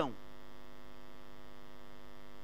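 Steady electrical mains hum, an even buzz with a ladder of overtones, unchanging throughout.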